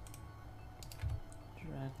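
A few sharp clicks of a computer keyboard and mouse, bunched about a second in along with a dull low knock.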